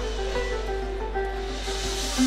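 A live bluegrass band playing without vocals: banjo, mandolin and acoustic guitar picking over a steady bass line.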